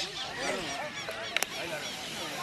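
Many short, overlapping bird calls, a flock honking and chattering, with one sharp knock about one and a half seconds in.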